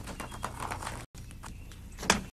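An irregular run of sharp knocks over a steady low hum, the sound cutting out completely for a moment about a second in.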